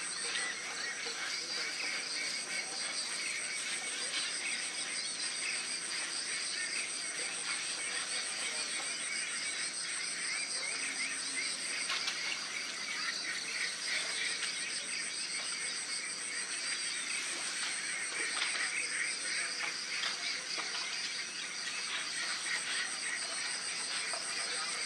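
A steady high-pitched chorus of trilling insects, with many shorter chirps and frogs calling lower down. The highest trill thins out twice and comes back.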